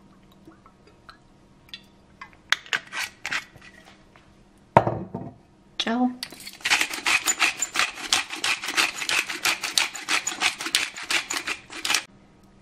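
Metal spoon stirring olive oil and herbs fast in a glass bowl, clinking and scraping on the glass at about eight strokes a second through the second half. Before it come a few scattered clinks and a single thump about five seconds in.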